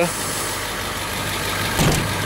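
A school bus diesel engine idling steadily, with a single low thump near the end.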